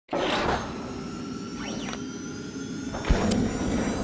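Channel-logo intro sound effect: airy whooshes over steady tones, a sweep that goes up and back down in pitch, and a deep hit about three seconds in.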